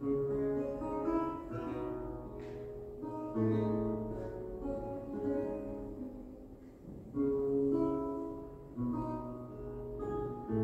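Solo long-necked lute playing the slow instrumental introduction. Plucked chords over deep bass notes, each left to ring and fade before the next is struck.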